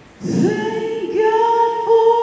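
Gospel choir singing a held chord through the sound system, entering after a brief hush about a quarter second in, with more voices joining about a second in.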